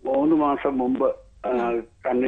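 Speech: a woman talking in Malayalam, with a brief pause partway through.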